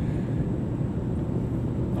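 Steady low rumble of room background noise, with no distinct events.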